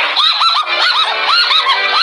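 A rapid string of short, high honking calls, about five a second, each one rising and falling in pitch.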